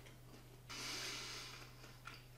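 A person breathing out through the nose while chewing a mouthful of food: a soft hiss that starts suddenly about two-thirds of a second in and fades away over about a second.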